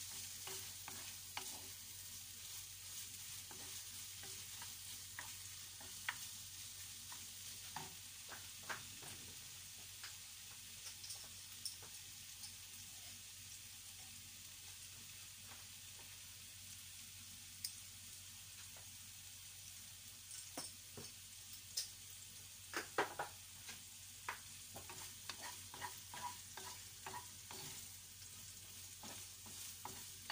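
Corned beef frying in a pan with a steady high sizzle, stirred and scraped with a wooden spatula. Scattered taps of the spatula against the pan come more thickly in the second half.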